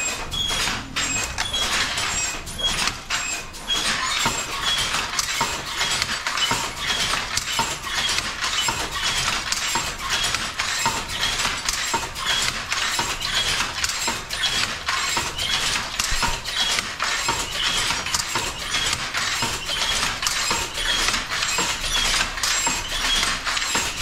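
Wooden handloom clicking and clattering as the weaver works the weft, a quick irregular run of small knocks that goes on without a break.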